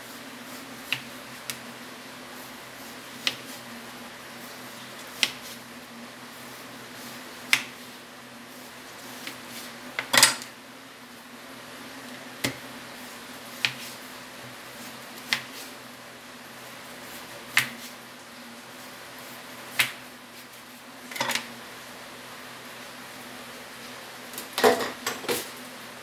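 Kitchen knife cutting slabs of raw pork belly on a plastic cutting board: sharp knocks of the blade hitting the board every second or two, with a quick cluster of several near the end. A low steady hum runs underneath.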